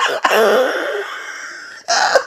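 A person's long, breathy laugh that trails off over about a second and a half.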